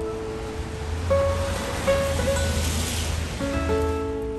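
Background music of held, plucked notes, with a rushing noise that swells up about a second in and fades away shortly before the end.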